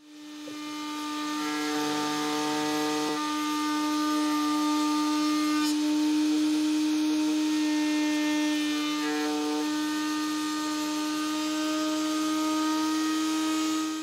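Table-mounted router spinning up and then running at a steady high pitch while a wooden board is fed along its bearing-guided bit.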